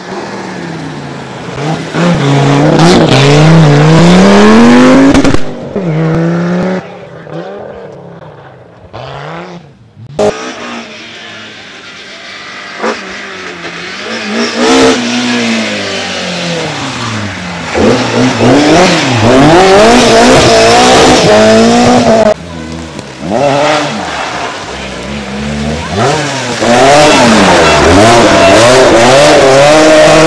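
Historic rally cars, an Audi Quattro and then a BMW M3 among them, driven flat out on a rally stage: engines revving hard, pitch climbing and dropping sharply again and again with each gear change. There is a quieter stretch about a third of the way in, then the cars come loud again.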